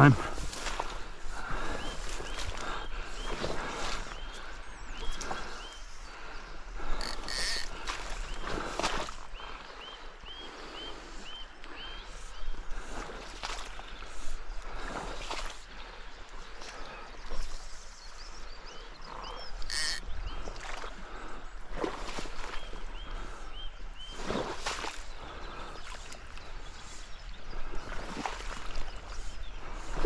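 A small bird repeating short high chirps in runs of a few seconds, over scattered brief rustles and swishes of movement in wet, boggy grass.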